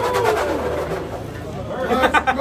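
Indistinct talking, over a low steady hum.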